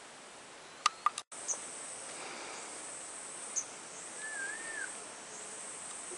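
Steady outdoor hiss with two sharp clicks about a second in and a momentary cutout. A short wavering whistle comes past the middle.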